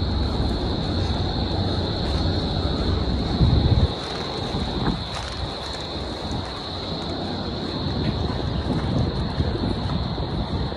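Wind buffeting the microphone of a handheld camera carried outdoors. It is heavy for the first four seconds, then eases suddenly, over a steady high-pitched hiss.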